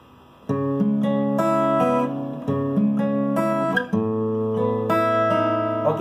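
Steel-string acoustic guitar fingerpicked in a repeating arpeggio: a bass note on the fifth string, then the second, first and second strings, starting about half a second in. The bass note changes a couple of times as the chord shape changes.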